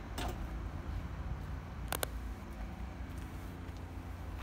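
Wind rumbling on the microphone, with two sharp clicks: one just after the start and one about halfway through.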